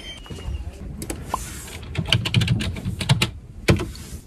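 A run of irregular sharp clicks and knocks over a low rumble, starting about a second in, with the loudest knock near the end.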